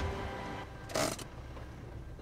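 Soft background music from the drama's soundtrack over a low steady hum, with one short sound about a second in.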